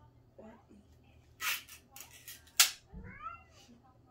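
Ring-pull lid of a Spam can being pulled open: a rasping, tearing burst about a second and a half in, then a sharp metallic snap, the loudest sound, as the lid comes free. A short rising squeak follows just after.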